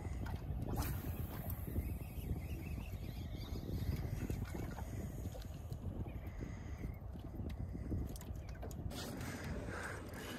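Wind rumbling steadily on the microphone, with water washing against the hull of a small drifting boat and a few faint clicks.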